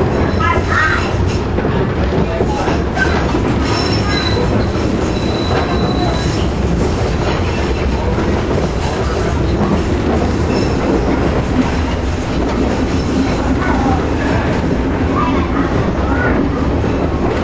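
Electric trolley car (streetcar) running along its track, heard from inside the car: a steady rumble and rattle of wheels and body, with a faint high wheel squeal about four to six seconds in.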